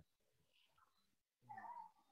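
Near silence on a video-call audio line, broken about one and a half seconds in by a single faint, brief pitched sound.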